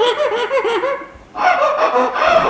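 A man laughing in a quick run of short voiced bursts, breaking off briefly about a second in before laughing again.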